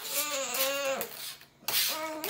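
Infant girl letting out a drawn-out, cranky whine for about a second, followed near the end by a short scraping, rustling noise.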